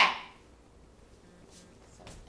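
A single short, sharp handling noise at the start that dies away within a few tenths of a second, then quiet room tone.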